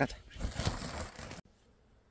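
A short spoken 'let's go', then about a second of rustling and crunching in dry bamboo leaf litter as a sack of freshly picked bamboo shoots is handled and she moves off. The sound cuts off abruptly partway through, leaving faint outdoor quiet.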